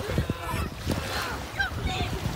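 Small waves washing in at the shoreline, with several short, high calls over them.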